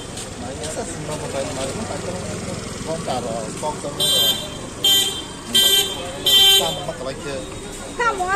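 A vehicle horn honks four short times in quick succession, about two-thirds of a second apart, over steady street traffic and people talking.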